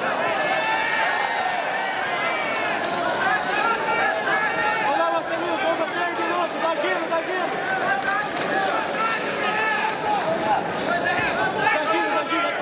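A crowd of spectators shouting and calling out over one another: a steady din of many overlapping voices.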